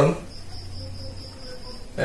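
A steady high-pitched trill or whine, like an insect's, over a low hum.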